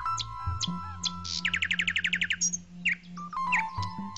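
Short electronic intro jingle: a low sustained drone and held synth notes, with bird-like chirps through it. About a second and a half in comes a quick trill of about ten rapid chirps.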